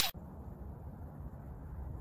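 Faint, steady outdoor background noise picked up by a handheld recording, mostly a low rumble with no distinct events. The tail of a whoosh cuts off right at the start.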